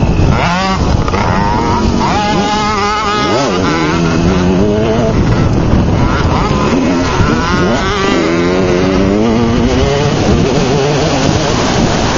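Small youth dirt bike engine revving up and down again and again as it is ridden along a rough trail, over a dense steady noise.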